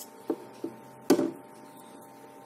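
Three small knocks on a wooden tabletop, the last and loudest about a second in, as a plastic glue bottle is put down. A faint steady hum runs underneath.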